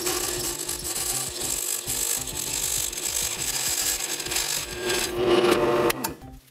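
Benchtop drill press running with a stepped drill bit cutting a half-inch hole through a metal enclosure: a steady motor hum under a continuous scraping cutting noise, stopping suddenly near the end.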